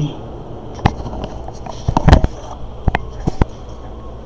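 Several sharp knocks and clicks, irregularly spaced, with a cluster of them about two seconds in.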